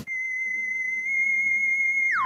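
Comedy sound effect: a single steady, high whistle-like tone that starts abruptly and holds, a little louder from about a second in.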